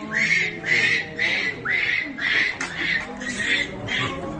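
Infant Japanese macaque calling over and over: about seven short high-pitched calls, each rising at the start, repeated roughly twice a second.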